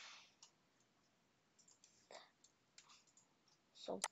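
Faint, scattered clicks of a computer keyboard and mouse as a short word is typed into a field, over near silence.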